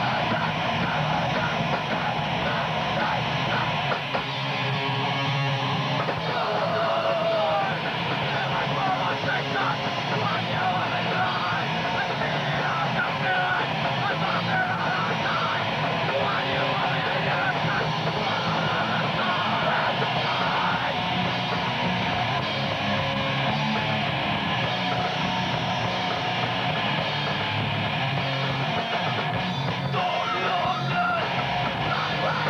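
A hardcore punk band playing a song live: distorted electric guitars, bass guitar and a drum kit playing without a break.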